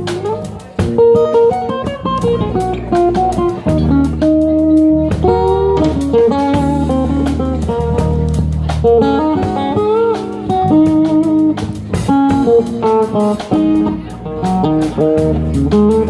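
Live band playing an instrumental passage: guitar picking a melody line with a few bent notes, over bass guitar and drums keeping a steady beat.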